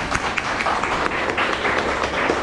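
Audience applauding: many people clapping in a dense, steady patter.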